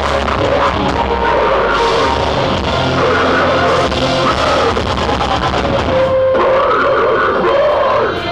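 Deathcore band playing live at full volume: heavy distorted guitars and drums, with the vocalist screaming into the microphone.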